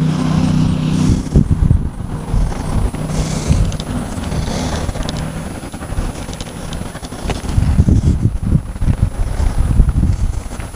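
A motor vehicle's engine hum, steady for the first half and fading out about halfway through, followed by irregular low rumbling.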